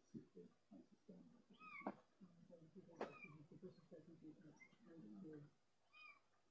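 Faint meowing, a run of short pitched calls, with two sharp clicks about two and three seconds in.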